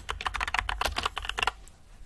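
Typing on a computer keyboard: a quick run of keystrokes that stops about one and a half seconds in.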